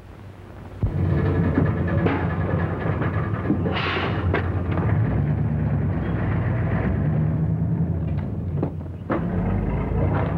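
Orchestral film score with drums, coming in suddenly about a second in and carrying on at a steady level.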